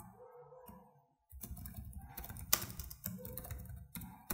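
Typing on a computer keyboard: after about a second of near quiet, a quick run of key clicks, a few of them struck harder than the rest.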